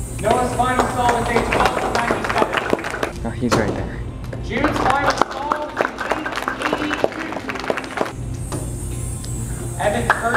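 Music with a singing voice, over a steady scatter of small clicks and taps.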